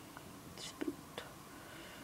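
A voice quietly whispering "next", followed by two faint short clicks.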